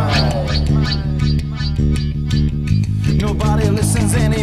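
Rap-metal instrumental passage with no vocals: bass guitar and guitar over a regular beat, with pitched lines sliding down. The low bass thins out about three-quarters of the way through.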